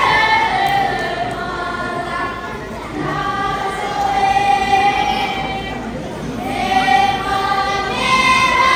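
Children's voices singing a Tibetan opera (lhamo) song together in long held notes that waver in pitch, in phrases of two to three seconds with brief breaks between them.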